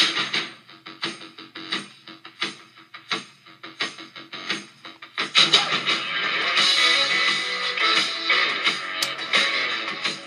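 A rock song playing through the small built-in speakers of a WowWee RS Media toy robot, fed by an aux cable: a sparse beat of single hits at first, with the full band coming in about five seconds in. The robot has a speaker in each hand and a subwoofer on its back, and its sound is not bad, but not great.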